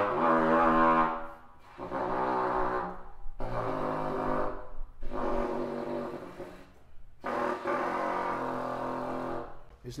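Trumpet played in its lowest register, below the low F-sharp usually taken as the bottom of its range. One loud held note fades about a second in, then four long, softer low notes follow with short breaks between them.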